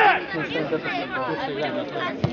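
Several people talking and calling out at once close to the microphone: football spectators chattering.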